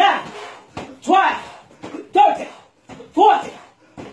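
Four short vocal calls, about one a second, keeping time with a medicine ball tossed back and forth, with light slaps of the ball being caught.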